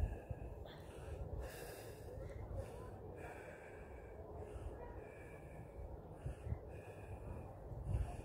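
Wind rumbling on the phone microphone, with a person's short breathy sounds about once a second.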